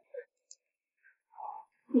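A near-quiet pause holding a few faint, brief sounds: a small click and a short, soft, breathy voice sound. Speech begins right at the end.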